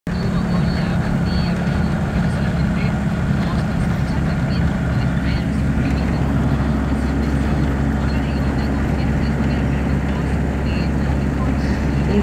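Steady engine and road drone heard from inside the cabin of a moving vehicle on a rain-wet highway.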